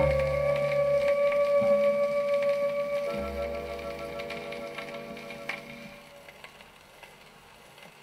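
Closing chord of a 1962 Soviet 78 rpm shellac record of a vocal song with ensemble, held and fading away, with a change of chord about three seconds in. Near the end only the shellac's surface noise and a few clicks remain.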